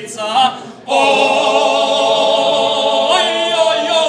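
Serbian traditional folk singing group singing a cappella in close harmony. After a brief breath just under a second in, the voices hold one long chord, which shifts near the end.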